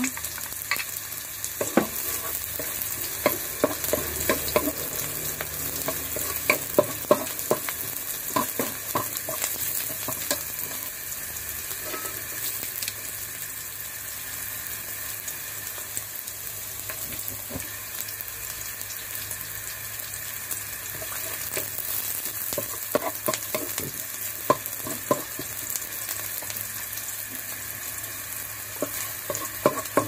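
Chopped onion and garlic sizzling in oil in a wok, with a wooden spatula scraping and clicking against the pan as it stirs, in two spells of stirring.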